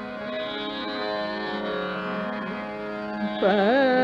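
Hindustani classical music in Raga Malkauns: a steady drone holds during a pause in the singing. About three and a half seconds in, a female vocalist comes back in, louder, with a wavering, ornamented phrase.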